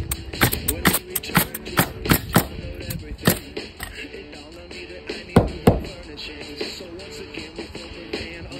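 Pneumatic roofing nailer firing into asphalt shingles: a quick run of about ten shots over the first three seconds, then two more later, heard over background music.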